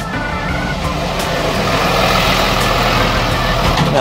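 A delivery truck's engine running close by, with a steady low hum under a broad noise that builds through the middle and eases off near the end.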